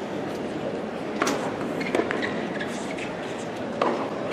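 Tennis ball being struck during a point, three short sharp pops about a second in, two seconds in and just before the end, over the steady low hush of a stadium crowd.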